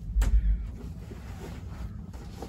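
A sharp click about a quarter of a second in, followed at once by a short, low, heavy thump lasting about half a second.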